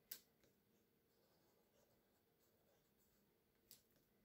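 Near silence, with the faint scratch of a felt-tip marker drawn along the edge of a paper banner; two faint ticks, one at the start and one near the end.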